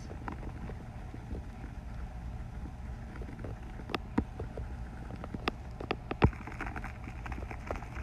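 A few short, sharp clicks over a steady low hum, the loudest about six seconds in.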